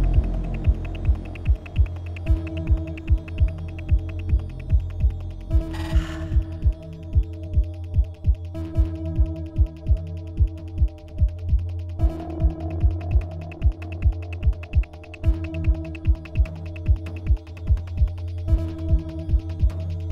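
Electronic ambient soundtrack: a low droning hum with held tones, pulsing steadily about twice a second, with a brief hissing swell about six seconds in.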